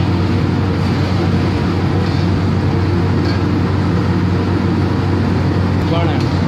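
Steady loud roar with a constant low hum from a commercial kitchen's gas range, running at high heat under a stockpot.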